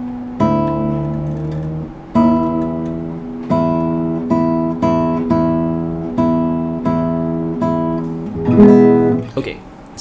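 Nylon-string classical guitar: a chord plucked over and over, each one left to ring, about every 0.7 s after the first few seconds, with a louder chord near the end. The left hand is on the tuning pegs, as when checking and adjusting the tuning.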